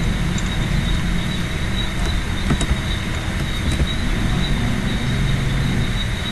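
Steady low rumbling background noise with a thin steady high whine, and a few faint keyboard clicks as a comment is typed.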